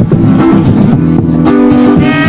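Acoustic guitar playing chords on its own, between sung lines.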